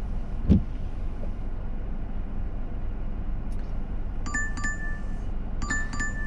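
A phone's delivery-app order alert: a bright double ping, sounding twice, starting about four seconds in, over a steady low car-cabin hum. A short low thump about half a second in.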